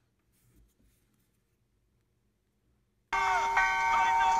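Faint handling of small parts, then about three seconds in a loud bell-like ringing of several steady tones starts abruptly and cuts off suddenly about a second and a half later, like an inserted bell sound effect.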